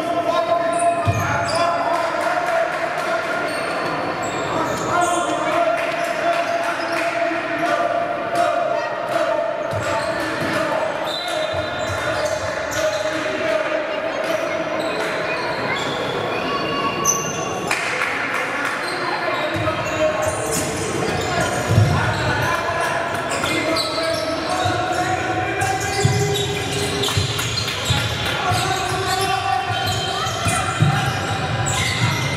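A basketball bouncing on a hardwood court in a large, echoing sports hall, under indistinct shouts and chatter from players and a small crowd. From about two-thirds of the way through, the ball's thumps come more often as it is dribbled in live play.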